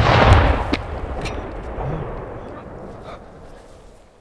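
The blast of an RPG-7 rocket launcher that has blown up on firing, fading as a rumble and echo over about three seconds, with a few sharp cracks through the tail.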